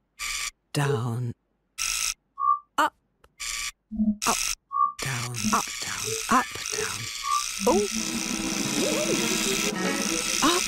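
Cartoon sound effects for a spinning toy contraption: short stop-start bursts of noise with bleeps, then a steady motor-like buzz from about halfway. Squeaky babbling character voices and a rising run of notes come over it near the end.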